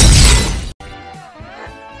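A loud glass-shattering crash sound effect that dies away and cuts off sharply under a second in, followed by music.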